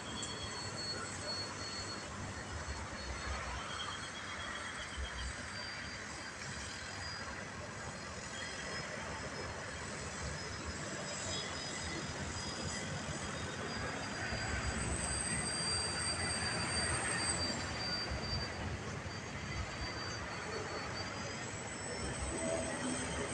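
Radio-controlled Extra 3D aerobatic model airplane flying manoeuvres overhead: a distant high-pitched motor whine that drifts slightly in pitch and grows a little louder about two-thirds of the way through.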